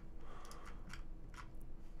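A few faint, irregularly spaced clicks of computer keys, made while searching on a computer, over a low steady hum.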